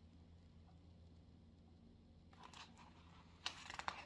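Near silence, then the page of a picture book being turned: brief soft paper rustles in the second half, the loudest near the end.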